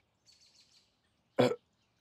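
Mostly quiet, then about a second and a half in a man's voice gives one short hesitant "euh". A faint hiss comes just before it.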